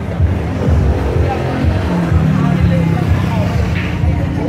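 Loud music with a pulsing bass beat and voices of a street crowd. Through the middle, an engine's pitch rises and then holds steady, as of a motorbike passing close.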